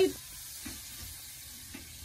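Faint, steady hiss with a few tiny ticks, following the last syllable of a voice at the very start.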